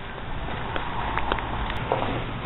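Steady outdoor noise from a handheld camera carried at walking pace, with a few light footfalls and handling clicks about a second in.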